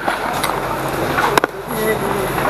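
Steady engine and road noise inside a moving city bus, with a couple of sharp clicks, the clearer one about a second and a half in. A voice speaks over it near the end.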